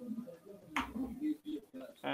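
A single sharp computer mouse click a little before one second in, over faint low muttering.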